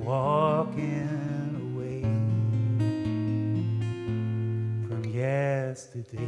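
Live acoustic guitar song: a man sings long held notes with vibrato over acoustic guitar, one at the start and another about five seconds in, the guitar ringing on between them.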